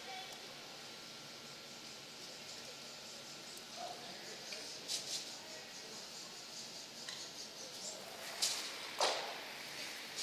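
Quiet curling-rink ambience: a steady low hum and faint distant voices, with a few short sharp knocks about five seconds in and twice near the end.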